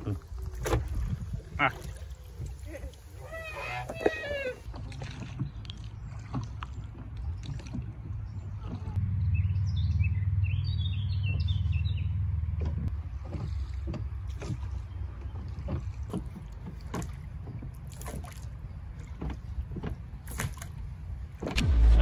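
Small rowing boat being rowed, with scattered knocks and splashes from the oars over a low rumble that swells about nine seconds in. A short voice sound comes about four seconds in, and birds chirp around ten to twelve seconds.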